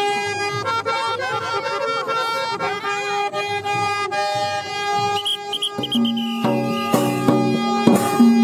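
Women singing a Santali folk song together, with a reedy wind instrument holding steady notes beneath their voices. About five seconds in, a rhythmic accompaniment with a low repeating note comes in, and a couple of sharp drum strikes land near the end.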